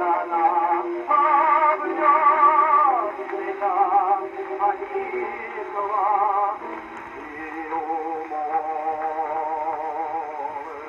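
A tenor singing an operatic cavatina, played back acoustically from a reproduction Berliner disc on a horn gramophone, with wide vibrato on long held notes. The sound is thin and narrow, with no deep bass and little treble.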